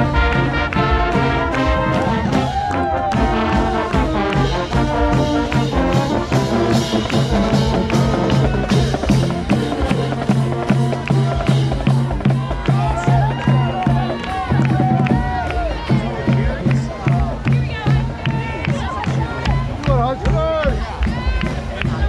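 Live brass band playing, trumpets and trombones over a repeated low bass note. Crowd voices rise over the band in the second half.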